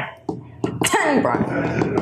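A person's voice: a short pause, then vocal sounds starting again about half a second in.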